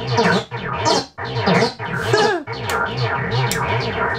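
Powertran 1982 DIY digital delay line playing back a garbled, chopped-up loop of earlier recorded music, its pitch swooping up and down with brief dropouts: at the longer delay setting it reads RAM chips holding leftover fragments from previous recordings.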